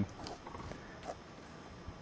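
Faint scratching of a pen writing on paper, with a few soft ticks over low room tone.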